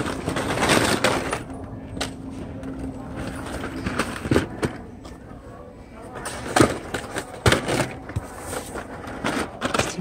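Hot Wheels blister packs, plastic bubbles on cardboard cards, being rummaged through by hand and rustling and clacking against one another. A rustle comes first, then a string of sharp clacks through the second half.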